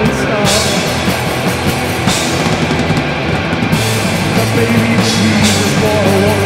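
Rock song played by a band with a drum kit, loud and steady, with bursts of high cymbal-like hiss every second or two.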